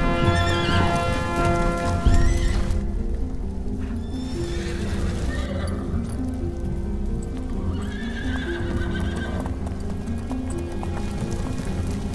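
Film soundtrack of a troop of horses on the move: hoofbeats and several neighs, one near the start, another about two seconds in and more later, over held score music.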